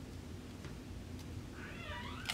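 Quiet room tone, then near the end a brief, faint, high call whose pitch wavers.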